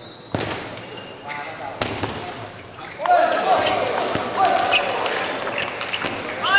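Table tennis rally: sharp knocks of the celluloid ball on paddles and table, the loudest about a third of a second in. From about three seconds in, voices shout as the point ends.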